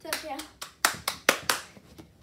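A brief voice call, then a person clapping hands about five times in quick succession.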